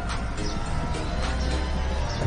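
Film score music with a steady low bass note held under it.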